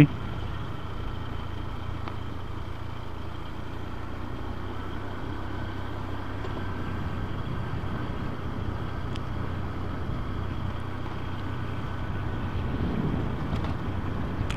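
Motorcycle engine running steadily at light throttle while cruising, with road and wind noise, rising a little near the end.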